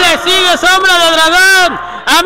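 A man's voice speaking in long, drawn-out syllables, the words not caught by the transcript.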